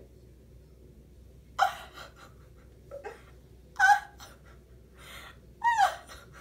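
A woman's wordless vocal outbursts: three short, breathy cries about two seconds apart, the last one wavering in pitch. She is mimicking being overwhelmed with emotion.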